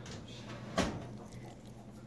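A single sharp knock about a second in, over a faint steady low hum.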